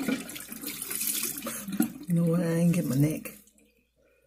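Water running from a bathroom tap into the sink during face washing, cutting off about three and a half seconds in. A voice sounds briefly over it near the end.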